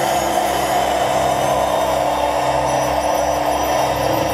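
Live electronic music: a loud, sustained synthesizer drone with a throbbing bass underneath and no drums.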